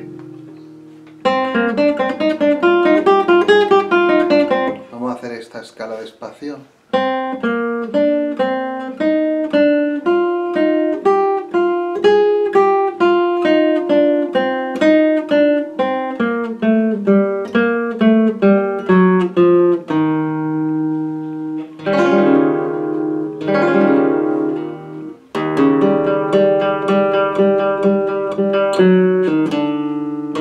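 Flamenco guitar playing a rondeña solo in its open scordatura, with the sixth string tuned down a tone and the third down a semitone, capo at the first fret. A ringing chord is followed about a second in by a quick strummed flurry, then from about seven seconds a long run of single plucked notes stepping downward. Strummed chords come twice a little past the middle, and a busier passage of chords and notes comes near the end.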